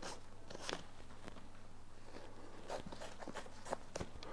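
Laces being loosened and pulled through the hooks of a felt-and-leather boot: faint scattered rustles and small clicks.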